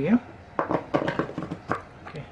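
Hard plastic clicks and knocks as a fan blade hub is handled and pushed onto the motor shaft, several irregular taps over about a second.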